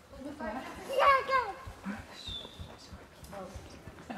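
A voice, likely a child's, calls out loudly about a second in, the pitch falling away. A short, high, whistle-like tone follows about a second later.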